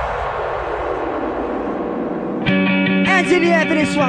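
Electronic dance music from a DJ mix: a filtered white-noise sweep builds, then about two and a half seconds in it cuts sharply to a new section of held notes with sliding pitched lines over them.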